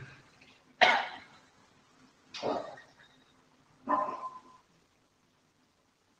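Three short, sharp bursts of a person's voice about a second and a half apart, each starting suddenly and dying away quickly, the first the loudest.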